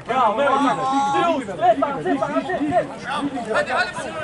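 Several people talking at once, their voices overlapping throughout.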